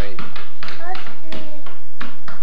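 A young child's voice in short fragments, mixed with a quick, uneven run of sharp taps or knocks, about eight in two seconds.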